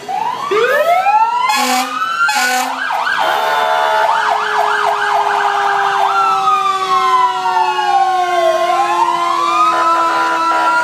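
Fire truck sirens sounding as the trucks pass: sirens winding up, two short horn blasts about two seconds in, a fast yelp, then a slow wail falling and rising again, over a lower tone that slowly slides down.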